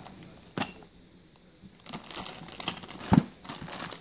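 Plastic bags crinkling and rustling as coin holders and packets are moved about in a storage box, starting about two seconds in, with a sharp click early and another sharp tap a little after three seconds.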